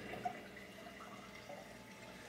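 Faint water trickling in a running saltwater aquarium, with a few small drips.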